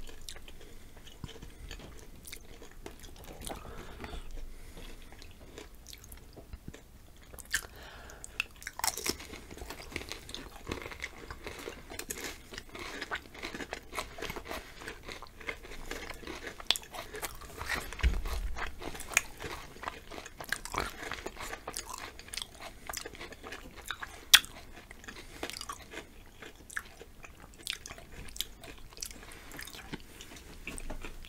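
Close-miked crunching and chewing of chocolate-covered potato chips: crisp cracking bites and wet chewing, sparse at first and coming thick from about eight seconds in, with a few sharper snaps.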